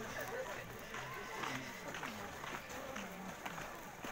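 Indistinct voices of several people talking a little way off, over footsteps on packed snow.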